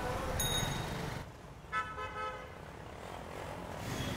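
Background street noise with a vehicle horn sounding briefly and faintly, about two seconds in.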